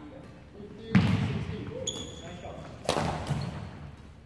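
Badminton rackets striking the shuttlecock in a rally: two sharp hits about two seconds apart, each echoing in a large hall, with a short high squeak between them.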